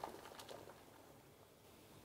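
Near silence: room tone, with a few faint short clicks in the first half second.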